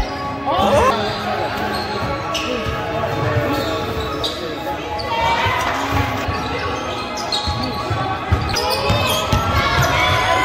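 Live sound of an indoor basketball game: a ball bouncing on a hardwood court, with players and spectators calling out, echoing in a large gym.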